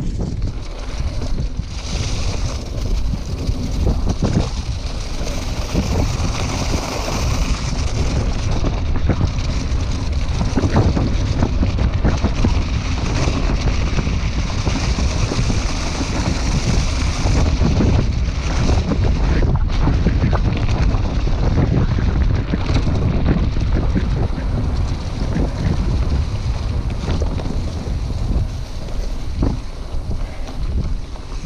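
Wind buffeting an action camera's microphone, over the rumble of a hardtail mountain bike's tyres on a bumpy dirt trail, with frequent knocks and rattles from the bike over rough ground.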